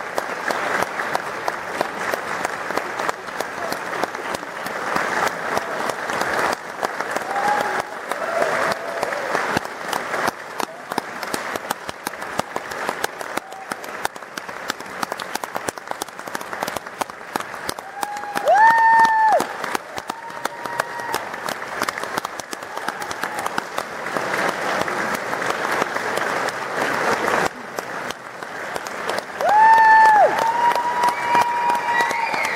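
Audience applauding steadily, a dense patter of many hands clapping. A couple of single voices cheer with a high rising whoop, one about halfway through and one at the very end.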